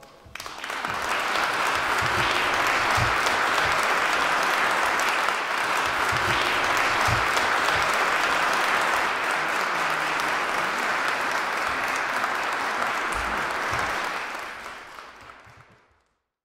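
Audience applauding, starting just after the choir's final chord dies away and fading out near the end.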